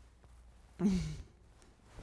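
A young man's short, breathy sigh with a falling pitch about a second in, between stretches of quiet room tone.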